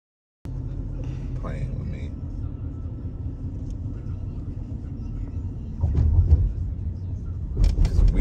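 Steady low road and engine rumble heard from inside a moving car's cabin, growing louder for a moment about six seconds in.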